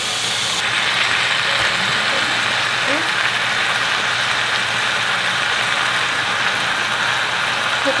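Chicken pieces in a chili-paste sauce frying in a stainless steel pot, with a steady, even sizzle.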